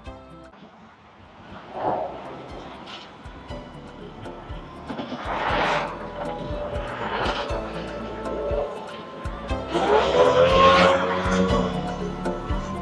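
Cars passing on the street, each one swelling and fading; there are about four passes, the loudest near the end. Background music plays quietly underneath.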